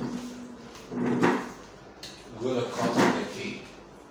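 Plastic chair scraping across the floor in two strokes, about a second in and near three seconds in, as it is pulled up to the table and sat on.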